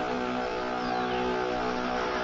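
A ship's horn sounding one long, steady low blast.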